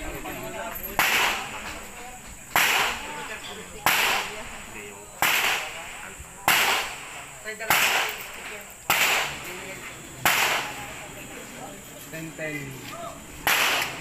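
Nine gunshots from a shooter firing a course of fire on the range, each a sharp crack with a short ringing tail. They come steadily at a little over a second apart, with a longer pause before the last shot.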